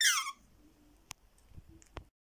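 A short, high squeak that falls steeply in pitch at the very start, then a few faint clicks as a Boston terrier puppy mouths and chews a plush toy.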